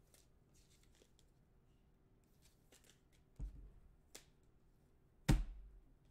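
Trading cards being handled and sorted on a table: mostly quiet, with a few soft knocks and clicks and a louder knock and rustle about five seconds in.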